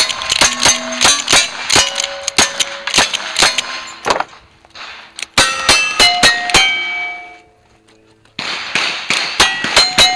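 A fast string of lever-action rifle shots at steel targets, each hit answered by the ringing clang of a steel plate. After a short pause about four seconds in, the rifle gives way to revolver shots on more ringing steel plates, with another brief lull near eight seconds before the shooting resumes.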